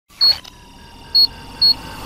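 Short, high electronic beeps, three of them in quick succession with a click at their onset, over a faint steady tone: the opening sting of a news programme's countdown intro.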